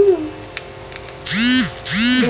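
A young woman's wordless vocal noises: a short hum at the start, then two drawn-out groans that rise and fall in pitch near the end, made while peeling a charcoal mask off her face.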